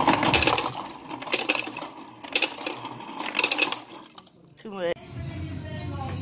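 Refrigerator door ice dispenser running, with ice cubes clattering into a plastic cup in several short bursts over the first four seconds.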